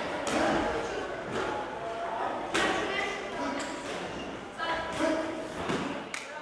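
Boxing gloves landing on an opponent with a few sharp thuds during a professional bout, under the voices of spectators and corners.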